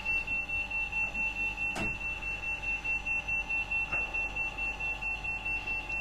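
Electronic alarm buzzer sounding a high-pitched steady tone that pulses rapidly, with a couple of faint clicks.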